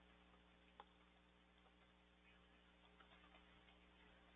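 Near silence with a few faint, sparse keyboard key clicks, the clearest about a second in, over a low steady hum.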